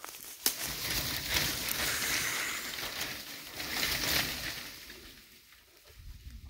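Pine branches and needles brushing and rustling against the microphone, with a sharp click about half a second in; the rustle fades out over the last couple of seconds.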